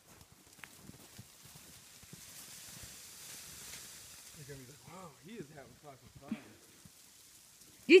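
Quiet outdoor scene with a faint hiss, and a faint, distant voice talking briefly a little past halfway.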